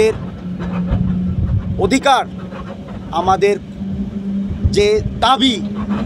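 A man speaking loudly in short impassioned bursts, over the steady low hum of an idling vehicle engine.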